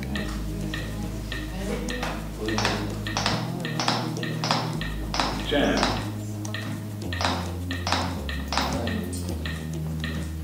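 AED training unit's CPR metronome beeping steadily, about twice a second, pacing chest compressions on a CPR manikin, with low background music underneath.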